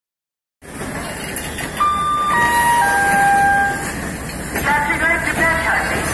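Three held chime notes stepping down in pitch, the pre-announcement chime of a railway station's public-address system, over the steady background noise of a train on the platform.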